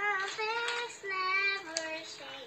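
A young girl singing a wordless tune in short held notes that step up and down in pitch, with a sharp rustle or two of book pages as she flips them.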